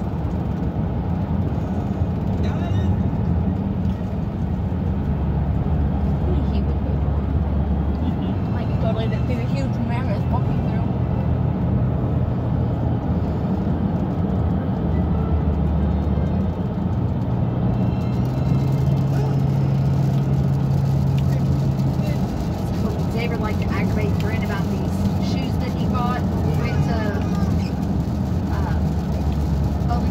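Steady road and engine drone inside a car cabin at highway speed, a constant low rumble with a hum that shifts slightly in pitch. Faint voices come in during the last part.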